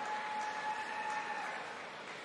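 Murmur of a large indoor crowd, with one high, steady whistle-like tone held for over a second that stops about a second and a half in.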